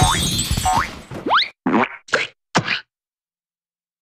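Children's-song backing music with rising cartoon swoop effects fades out about a second in. A final, longer rising swoop follows, then three short noisy hits in quick succession.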